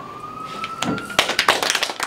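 A few people clapping by hand after the song, starting about a second in, over a thin tone that glides slowly upward and stops as the clapping grows.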